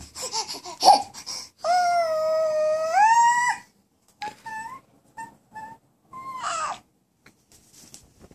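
Infant vocalizing: one long high squeal of about two seconds that rises in pitch near its end, then a string of short high calls.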